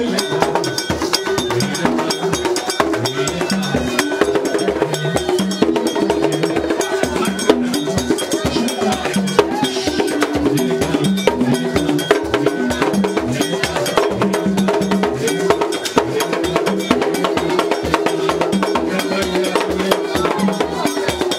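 Live Haitian Vodou ceremony music: drums and a struck metal bell keep up a fast, steady beat, with voices singing over it.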